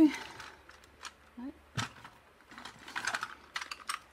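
Wooden coloured pencils clicking against one another as one is picked out: a few scattered sharp clicks, the sharpest about two seconds in and several more near the end.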